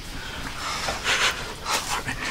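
A man breathing hard from the effort of climbing up out of a tight rock crevice, with a few heavy breaths, the strongest about a second in and near the end.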